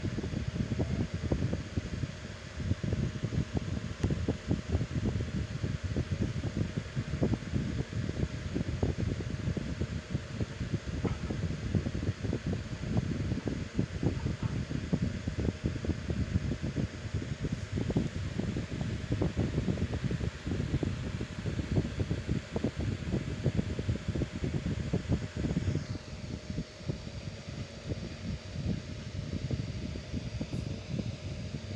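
Steady rumbling air noise from a fan, with the airflow buffeting the microphone.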